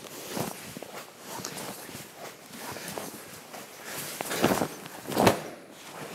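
Bare feet shuffling on foam training mats and cotton karate gis rustling as two people work through a punch-and-block drill. Two louder rustles come about four and five seconds in.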